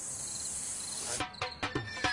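Crickets chirping, short regular chirps over a steady high insect hiss, cut off suddenly a little over a second in. Music with sharp percussive hits starts at that point.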